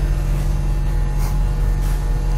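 A steady low mechanical hum from a running machine, with no change in pitch or level.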